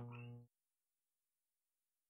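Near silence: a faint hum trails off within the first half second, then the sound cuts to dead silence.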